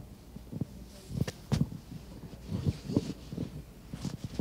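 Horse cantering on the sand footing of an indoor arena, its hoofbeats coming as irregular groups of dull thuds from about a second in.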